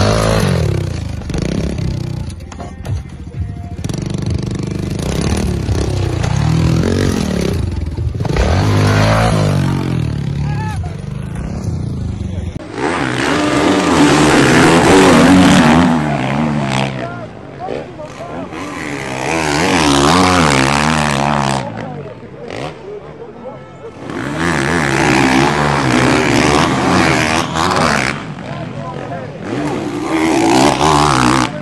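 Dirt bike engines revving, with voices shouting over them; the sound gets much louder and denser about a third of the way in.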